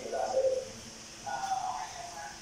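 A child's voice making two drawn-out wordless sounds, the second higher than the first.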